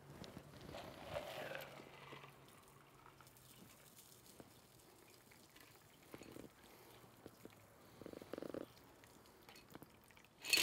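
Faint pouring of a shaken cocktail from the shaker tin through a fine-mesh strainer into a glass, heard mostly in the first two seconds, then near silence with a few soft sounds.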